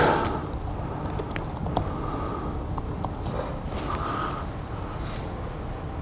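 Laptop keyboard typing: scattered, fairly faint key clicks over a steady background hiss and hum.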